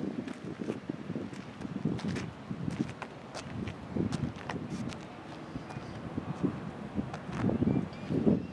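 Footsteps on asphalt as the person filming walks, with light wind on the microphone and scattered small knocks.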